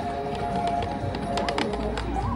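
Background music with steady held notes, and a quick run of sharp clicks about one and a half seconds in.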